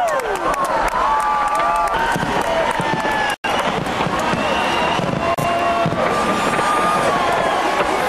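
Large fireworks display, dense crackling and sharp bangs, over a crowd cheering and calling out, their voices rising and falling. The sound cuts out completely for an instant a little under halfway.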